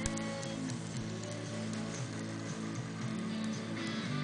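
Music from a distant FM radio station, received on an indoor antenna and played through an LG FFH-218 mini hi-fi system's speakers. Steady held notes change pitch every second or so.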